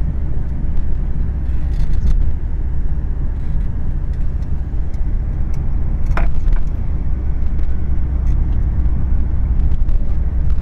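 Road and engine rumble heard from inside a moving car: a steady low drone with faint rattles, and a brief high squeak about six seconds in.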